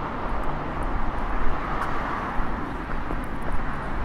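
Steady outdoor city-traffic noise with a low, uneven rumble underneath and a few faint ticks.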